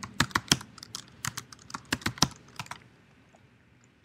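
Computer keyboard being typed on: a quick run of a dozen or so key strokes over the first three seconds or so, then stopping.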